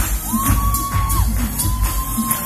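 Loud Brazilian funk dance track with a steady fast beat and heavy bass, over which a long high whistle sounds twice while the crowd cheers.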